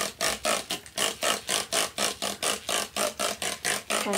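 Plastic trigger spray bottle pumped rapidly, spraying water onto paper in quick hissing squirts, about five a second.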